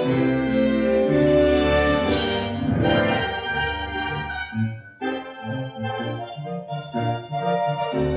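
Tango orchestra music with bandoneon and strings: sustained chords swell, break off suddenly about five seconds in, then resume as short, clipped beats.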